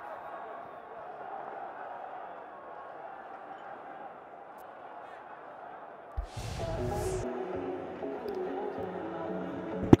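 Steady stadium crowd murmur on a cricket broadcast. About six seconds in, a short burst of noise comes in, then music with steady tones. Just before the end there is a single sharp crack of a cricket ball meeting the bat as a yorker is dug out.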